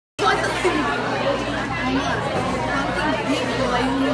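Many students chattering at once in a full classroom: overlapping voices at a steady level, with no single speaker standing out.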